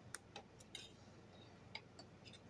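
Faint mouth clicks from chewing and lip smacking while eating spaghetti: about four short, sharp clicks over two seconds in near silence.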